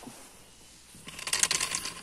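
Dry bark being peeled and torn from a fallen birch log, gathered as fire-starter tinder: a rapid, dense crackling tear that starts about a second in and lasts about a second.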